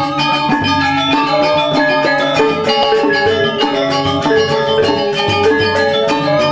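Balinese gamelan playing: bronze metallophones (gangsa) struck with mallets in rapid, dense runs of ringing metallic notes over low pulsing strokes.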